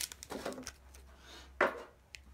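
Booster packs being taken out of a metal collector's tin by hand: quiet handling and one sharp clatter about a second and a half in.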